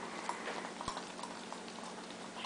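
A small dog licking ice cream off a metal spoon: soft wet licks with a few small clicks, the sharpest just under a second in.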